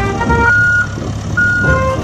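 Heavy vehicle engine running with a steady low rumble, broken by two short high beeps like a reversing alarm, over background music.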